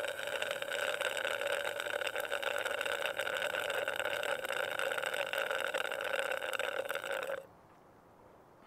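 A long, loud slurp through a drinking straw from a plastic cup, steady with a rough, fluttering rasp, cutting off suddenly near the end.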